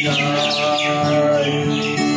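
A man singing a Bengali devotional song with acoustic guitar, holding a long sung note. Birds chirp over it in quick falling calls near the start and again near the end.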